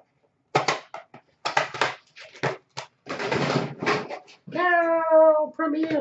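A man's voice making indistinct, wordless vocal sounds, ending in a long, drawn-out high-pitched vocalisation that starts about four and a half seconds in and falls slightly in pitch.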